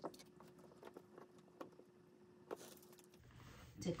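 Faint handling noises from a hot glue gun and a ribbon-decorated wreath being worked with: a scattering of light clicks and taps, with a faint steady hum under them that cuts off a little after three seconds. A woman's voice starts right at the end.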